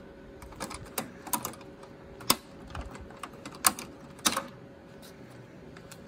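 Irregular light clicks and taps of a small stamped metal wrench against the screw and the plastic side cover of a large-format printer as the cover's screw is undone and the cover is handled, a few sharp clicks a second or more apart.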